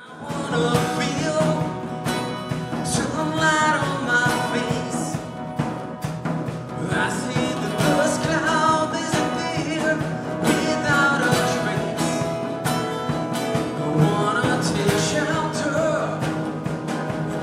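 Live acoustic blues-rock trio playing: strummed acoustic guitar and a drum kit under a bending harmonica lead.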